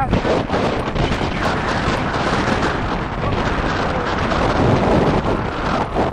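Loud wind noise buffeting a helmet camera's microphone as a bicycle rides fast over rough grass, with constant small knocks and rattles from the ride.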